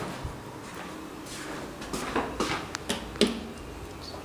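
A handful of irregular sharp clicks and knocks in the second half, the loudest about three seconds in, over a low steady room background.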